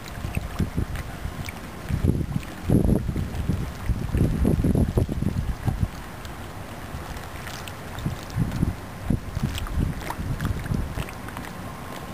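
Wind buffeting the microphone in irregular gusts, a low rumble that swells and drops back several times.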